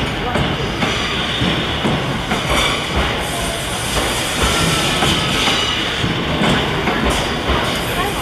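Cassiopeia sleeper train's E26-series passenger coaches rolling past a station platform as the train departs, wheels knocking over rail joints with a steady rumble and a faint squeal in the middle.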